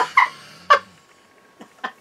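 A woman laughing in a few short, sharp bursts that fade over the second half.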